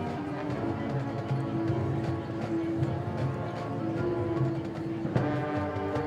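Marching band playing its halftime show: brass holding sustained chords over drumline and front-ensemble percussion. A new loud chord with a percussion hit comes in about five seconds in.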